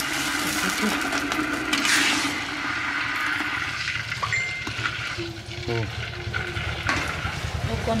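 Water poured from a plastic bowl into a pot of broth, splashing for about the first two seconds, then the liquid stirred with a ladle, with light clinks against the pot.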